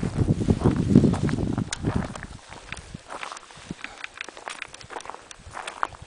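Footsteps and trekking-pole clicks on rocky ground during a climb, a scatter of short knocks and scrapes. Over the first two seconds a louder low rumbling noise lies under them, then dies away.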